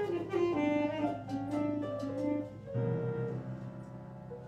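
Tenor saxophone playing a quick improvised jazz phrase over held upright-piano chords. A new low piano chord is struck about three seconds in and rings on as the sound fades.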